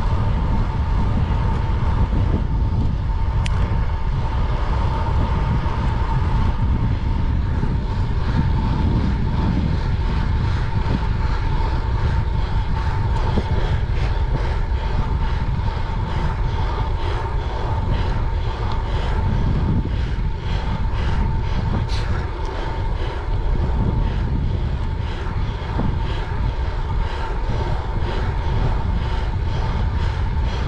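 Wind rushing over the microphone of a handlebar-mounted action camera on a road bike at about 30 mph, with road and tyre noise: a steady low roar with a thin constant whine running through it.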